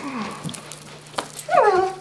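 Wordless vocal sounds from a person: a brief low falling 'mm' at the start, then about one and a half seconds in a high, drawn-out 'ooh' that slides down in pitch and holds briefly.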